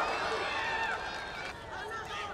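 Spectators' voices shouting over the steady murmur of an arena crowd.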